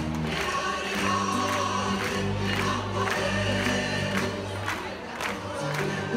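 Live choir singing with instrumental accompaniment, over sustained bass notes and a steady beat.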